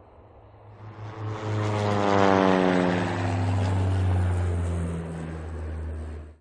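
Propeller airplane fly-by sound effect: a low engine drone grows louder about a second in, then its pitch slides steadily down as it passes and fades a little toward the end.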